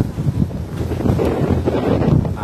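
Wind noise on an outdoor microphone: a steady low rumble with no speech.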